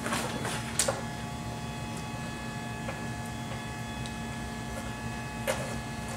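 A few short, sharp metal clicks as a snap hook on a patio curtain's tie-down strap is worked onto a floor-mounted D-ring, over a steady low hum.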